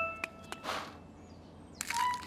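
Cartoon sound effects: a short steady tone dies away at the start and a soft swish follows about half a second in. Near the end comes a sharp crack as a cartoon egg breaks open.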